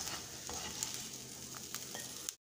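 Chopped onion and capsicum frying with a steady sizzle in a non-stick kadai, stirred with a spatula that clicks and scrapes against the pan a few times.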